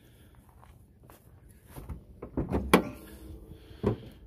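Hood of a 1998 Chevy C3500 being unlatched and swung open. Some handling rattle comes after a quiet first half, then a sharp metal click is the loudest moment, and another click follows near the end.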